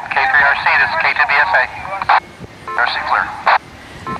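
Amateur radio repeater voice traffic heard through the speaker of a Kenwood TH-F6 handheld transceiver: a person talking in a thin, tinny voice, with short pauses between phrases.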